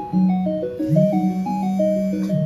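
Live band music: a quick repeating pattern of short notes over a held low note that swoops up in pitch about a second in.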